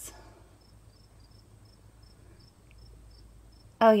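Faint, high-pitched chirping repeating about three times a second over quiet room tone, in a pause between words.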